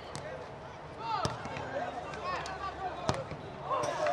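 A football kicked twice, two brief thuds about a second apart near the start and toward the end, amid players shouting and calling to each other on the pitch.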